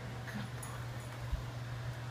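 Puppy tugging on a rope toy, making a brief small vocal sound about a third of a second in. A single soft thump comes a little past the middle, over a steady low hum.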